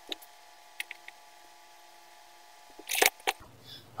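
A few light clicks over a faint steady hum, then a brief loud rustle and a sharp knock about three seconds in: a person moving about and sitting down on a chair.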